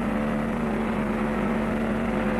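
A steady, even low drone with held pitched tones, unchanging throughout.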